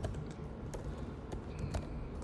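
Typing on a computer keyboard: a handful of separate keystroke clicks at an uneven pace.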